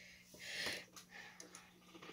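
Faint handling sounds of small computer parts being fitted by hand, a soft brief rustle about half a second in, over a low steady electrical hum.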